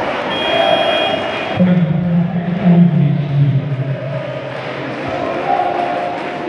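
Arena crowd chanting and cheering in a large hall. About half a second in, a high whistle-like tone is held for about a second, and then a man's low voice carries on for about three seconds.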